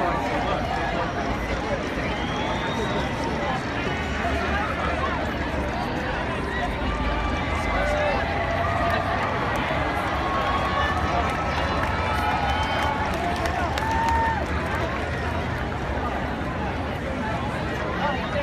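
Large crowd cheering and shouting, many voices overlapping in a steady mass of calls and whoops, with no music playing.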